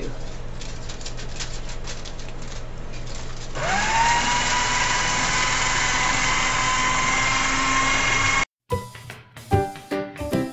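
Black & Decker paper shredder running as a piece of aluminium foil is fed through its cutters, meant to sharpen the blades, with a crackle of foil being cut. About three and a half seconds in, it grows louder with a motor whine that rises in pitch and then holds steady. The whine cuts off suddenly, and music starts near the end.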